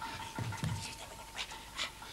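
A person panting in short breaths, with a couple of soft footfalls on the stage floor about half a second in.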